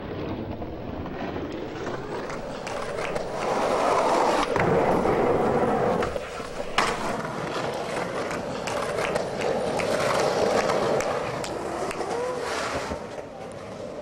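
Skateboard wheels rolling on pavement, a continuous rumble that swells and fades, with a few sharp clacks of the board, the sharpest about seven seconds in.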